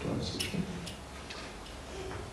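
Laptop keys or trackpad being pressed: about four sharp, unevenly spaced clicks, with a faint murmur of a voice near the start.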